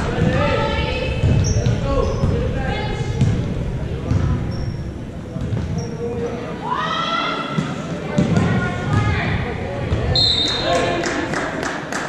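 Basketball game sounds in a large gym: a ball bouncing on the hardwood floor, sneakers squeaking and players and spectators shouting.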